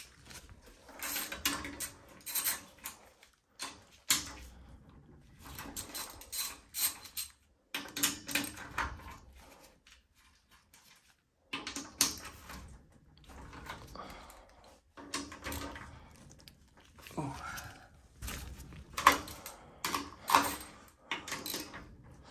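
Hand ratchet clicking in repeated short runs as the nuts and bolts on a boiler heat exchanger's cover panel are backed off, with metal clinks of the socket and loose fasteners between runs.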